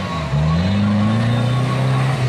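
Four-cylinder engine of an off-road competition 4x4 revving hard under load while climbing a muddy bank. It dips briefly, then rises in pitch over about the first second and holds high.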